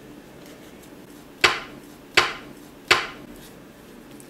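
Three sharp, evenly spaced strikes about three-quarters of a second apart, each ringing off briefly.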